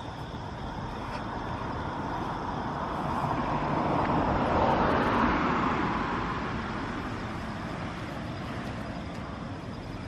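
A car driving past on the street, its road noise swelling to a peak about five seconds in and then fading away.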